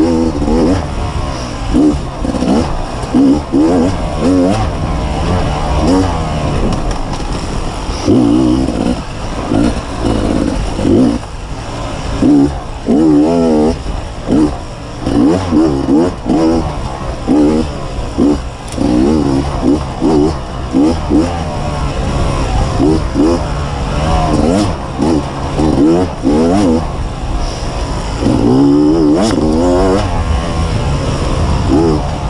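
2015 Beta 250RR two-stroke enduro motorcycle engine being ridden hard, revving up and dropping back over and over, its pitch rising and falling with each opening and closing of the throttle.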